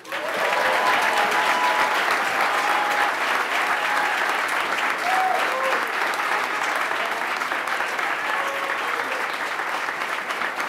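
Audience applauding steadily, starting the moment the name is read, with a few short cheering voices calling out in the first seconds.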